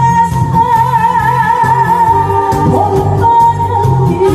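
A woman singing a Korean song into a handheld microphone over musical accompaniment with a steady, repeating bass beat. About two and a half seconds in, she finishes a long note held with vibrato, then moves on to shorter notes.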